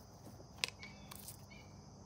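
Steady high-pitched insect chorus, with one sharp click about half a second in and a few fainter clicks and short chirps after it.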